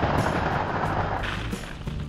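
Plastic ball-pit balls pouring out of a mesh bag into a fabric ball pit, a dense clatter of balls knocking together that thins out after about a second and a half. Background music plays underneath.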